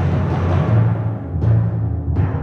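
Sampled orchestral timpani (Rhapsody Orchestral Percussion library) playing a sustained low roll, with a single struck note sounding about one and a half seconds in.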